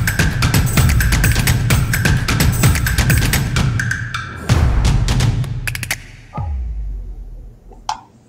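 Soundtrack music with a steady, busy percussion beat, closing with a deep falling boom about six seconds in and then fading away.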